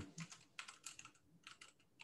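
Faint keystrokes on a computer keyboard: a quick run of typing through about the first second, a short pause, then a few more keys.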